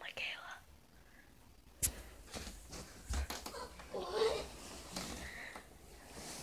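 Quiet whispering in a small room, in a few short breathy phrases, with a few soft clicks and rustles between them.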